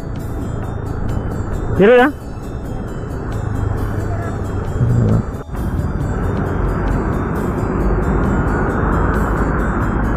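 Steady wind and road rush on a moving motorcycle, with a low engine and tyre rumble beneath it, growing slightly louder toward the end. It cuts out for an instant about halfway through.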